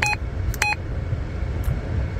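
Two short electronic key beeps from a Retevis RA86 GMRS mobile radio, about half a second apart, as buttons on its hand microphone are pressed. Under them is the steady low rumble of a car cabin.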